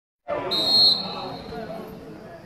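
Referee's whistle blown once, a short shrill blast of about half a second near the start, stopping play while a player is down. Voices of people on the sidelines are heard around it.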